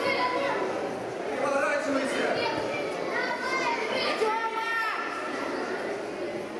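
Indistinct high-pitched children's voices calling out, with one longer call about four seconds in.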